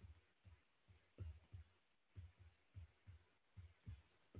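Near silence with faint, irregular soft low taps of a stylus writing on a tablet, several a second.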